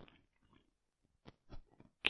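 Near silence in a pause of the narration, with a few faint short clicks in the second half.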